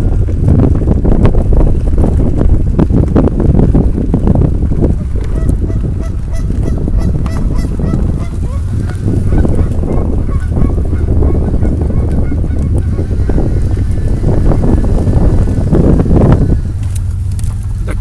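Canada geese honking, several calls in the middle of the stretch, over a loud, steady low rumble.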